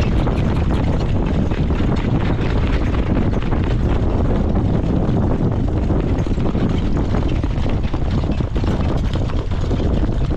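Steady wind rushing over the microphone of a camera riding on a moving harness-racing jog cart, with a constant patter of small clicks and rattles from the cart and the horse's hooves on the dirt track.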